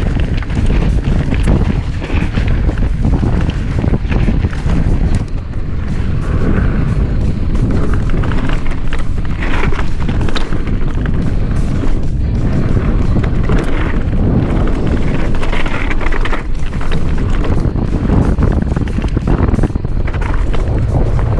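Wind buffeting the microphone of a mountain bike rider on a fast descent, with the bike rattling and knocking continuously over rough rock and dirt trail.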